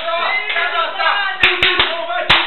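A group of young men chanting and shouting, with three sharp hand claps in quick succession about a second and a half in.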